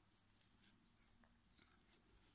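Near silence, with a few faint soft ticks and rustles of a metal crochet hook working yarn.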